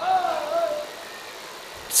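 A voice holds one wavering, drawn-out note for under a second, like the tail of a wailed phrase. It fades into a steady low background hiss.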